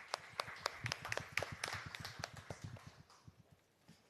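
Scattered applause from a small, sparse audience, thinning out and stopping about three seconds in.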